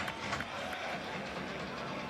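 Steady background noise of a football stadium crowd.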